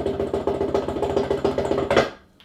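A drum roll: very rapid, even drum strokes over a steady ringing tone, played as a build-up, which stops abruptly at the end.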